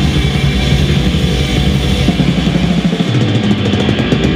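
Live metal band playing loudly: electric guitars, bass guitar and drum kit. About three seconds in, the deep low end drops away, leaving guitars and sharp drum strokes.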